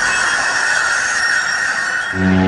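Electronic sound effect in a logo intro: a steady, high-pitched screeching hiss held at one pitch.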